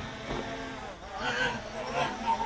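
Faint voices of people talking and calling out during a pause in a marching band's playing.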